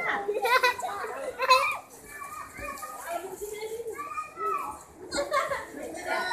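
Children's voices shouting and chattering by a swimming pool, loudest in the first second and a half.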